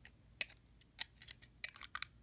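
A few light, sharp clicks and taps at irregular intervals as small plastic parts of a handheld Digivice toy are handled.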